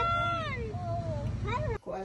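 A high-pitched wordless voice gives a long drawn-out squeal that rises and then falls away, and a shorter squeal follows about a second and a half in.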